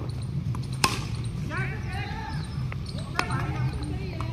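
Cricket bat striking the ball: one sharp crack about a second in, then a lighter knock about three seconds in, with distant voices calling out on the field.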